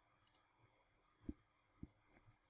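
Near silence broken by two faint computer mouse clicks about half a second apart, in the second half.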